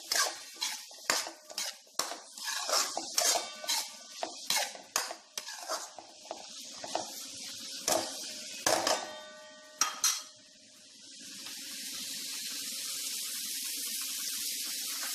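Spatula scraping and clinking against a metal pan while stirring chopped cauliflower frying in butter and oil, about two strokes a second. The stirring stops a little after ten seconds in, leaving a steady sizzle that grows louder.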